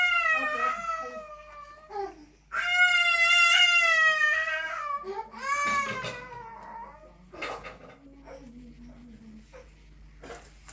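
Three long, high-pitched wailing cries, each bending up and down in pitch, the third one shorter, ending about six seconds in; a few faint clicks follow.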